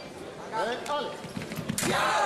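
Sabre fencers' footwork thudding on the piste as they attack, ending in a sharp clash near the end as the touch lands. A voice calls out about half a second in.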